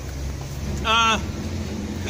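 A single short spoken syllable, a hesitation sound in a pause of a speech, about a second in, over a steady low rumble.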